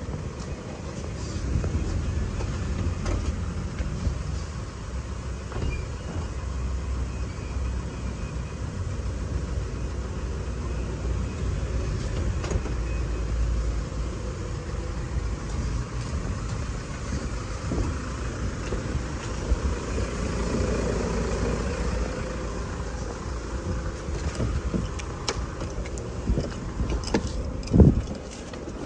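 A steady low rumble of a Hyundai Solati van standing with its engine running, under the whir of its automatic sliding-door motor. A sharp knock comes at the very end.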